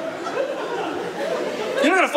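Theatre audience laughing, many voices together in a large hall. A man's voice starts speaking near the end.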